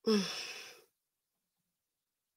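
A woman sighs once: a short voiced sigh that falls in pitch and fades out within the first second.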